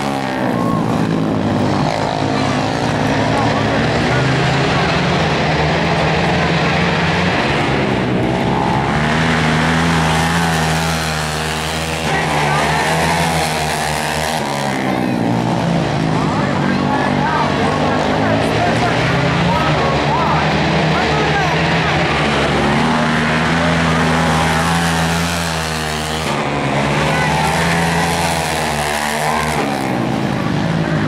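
Several racing quads, among them a Honda TRX450R with its single-cylinder four-stroke engine, running flat out around a dirt flat track. The engines rise and fall in pitch again and again as the riders accelerate out of the turns and back off into them, passing in a pack.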